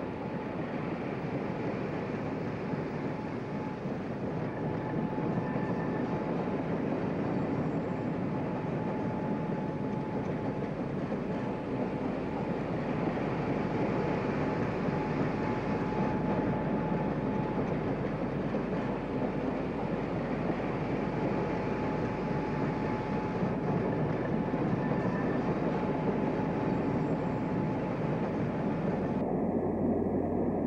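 Steady rumble of a train of coaches running past on the rails, with a faint high steady whine throughout.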